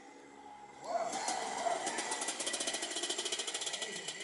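Two-stroke kart engine firing up about a second in, then running with a fast, even crackle of firing pulses.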